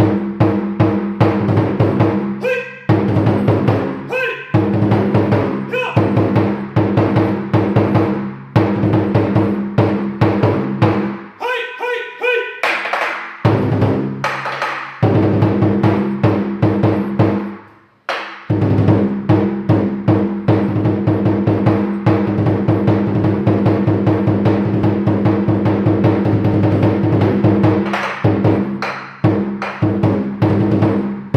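Large Chinese lion dance drum struck with two wooden sticks, played in fast, continuous rhythmic patterns and rolls, with a brief stop a little past halfway.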